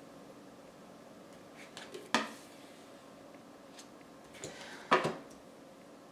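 Tarot cards being dealt onto a table: a few short slaps and slides of card on the tabletop, the sharpest about two seconds in and again near five seconds, over quiet room tone.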